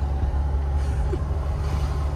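Steady low rumble inside the cabin of a Mercedes-Benz W126 with a 3.0 diesel engine, driving slowly. The car is running on a tyre that the occupants take to be flat, after hearing a bad noise from the left side of the running gear.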